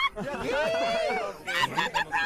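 Several voices overlapping, one of them a long nasal cry that rises and then falls over about a second, followed by choppier voices near the end.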